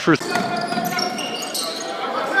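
Crowd noise in a basketball gym, with the sounds of play on the court, as a jump shot goes up.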